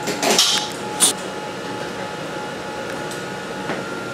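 A flexible suction hose being handled and fitted: a brief rustling scrape, then a single sharp knock about a second in, over a faint steady hum.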